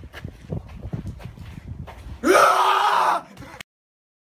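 Irregular thumps and rustling, then about two seconds in a man's loud scream held for nearly a second, rising in pitch at its onset. The sound cuts off dead just before the end.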